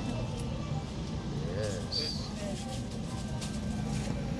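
Faint voices in the background over a steady low hum.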